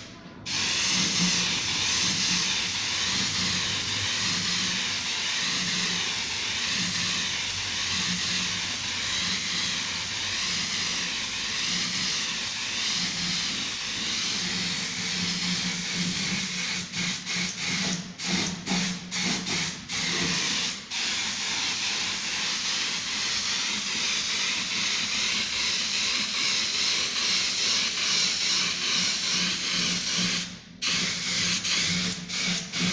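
Gravity-feed compressed-air spray gun hissing steadily as it sprays paint onto a wooden speaker box. The spray stops and restarts several times in quick succession past the middle as the trigger is released and squeezed.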